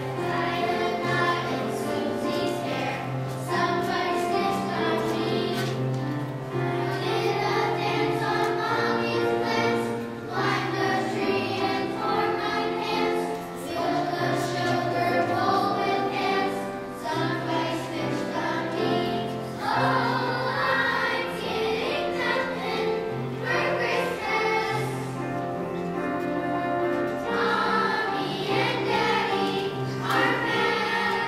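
Children's choir singing a song in phrases, with an accompaniment holding steady low notes underneath.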